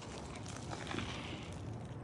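A crisp waffle crunching as it is bitten into and chewed, a run of small crackles.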